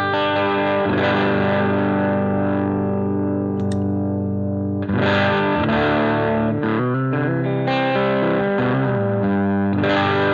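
Gibson SG Standard electric guitar with PAF-style humbuckers, played through the DCW Exoplex preamp/boost pedal into a Vox amp. Strummed chords ring out and sustain, with fresh chords struck about five seconds in, again near eight seconds and near the end.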